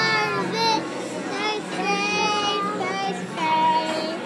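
A young girl singing, her high voice holding and bending sustained notes.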